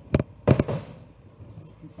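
Two sharp knocks close together from a wooden rolling pin coming down on the folded puff pastry and worktop, pressing the parcel shut.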